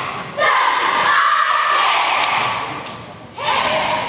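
Cheerleading squad shouting a cheer together in long, loud phrases, with a few sharp impacts in between.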